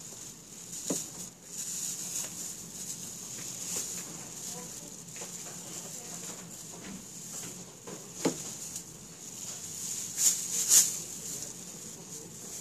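Thin plastic bakery bag rustling and crinkling as it is handled, with a few sharp clicks, the two loudest close together near the end, over a steady high hiss.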